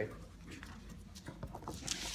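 Quiet classroom room tone with a few faint taps, then a brief rustle of clothing and handling near the end as the instructor moves up close to the microphone.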